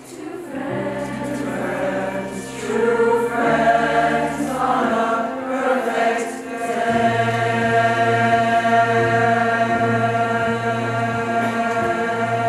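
A mixed choir of teenage voices singing sustained chords, swelling louder about three and a half seconds in and holding full and steady from about seven seconds on.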